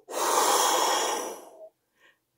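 A woman blowing out hard through her mouth in one long, forceful breath lasting about a second and a half. She is acting out the wolf blowing on the pigs' house.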